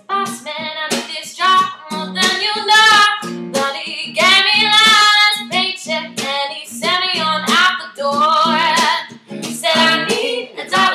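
A woman singing over a plucked acoustic guitar accompaniment.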